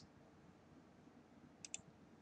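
Faint computer mouse click, two quick ticks close together near the end, selecting a photo thumbnail; otherwise near silence.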